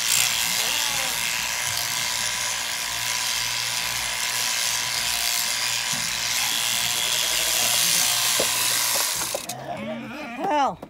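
Electric sheep-shearing handpiece, driven by an overhead motor through a jointed drive arm, running steadily as it clips through a lamb's fleece. It cuts off near the end, and a sheep bleats.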